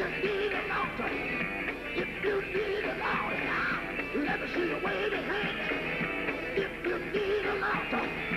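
Live gospel quartet music: the band plays continuously while voices sing and cry out over it with wavering pitch.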